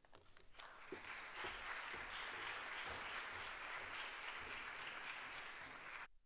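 Audience applauding, building up in the first second, holding steady and cutting off suddenly at the end.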